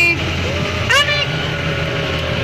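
Engine of an open tour boat running steadily with a low drone. A short, high, rising vocal call cuts in about a second in.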